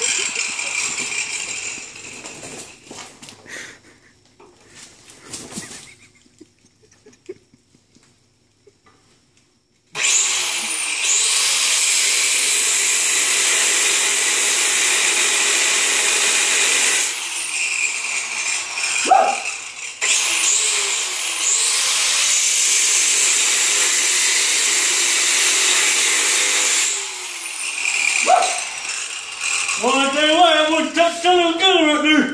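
Handheld angle grinder cutting metal on a garden tractor's steel frame, in two long steady runs of about seven seconds each with a short break between them. In the opening seconds the noise fades away, with a few knocks, into a stretch of near silence.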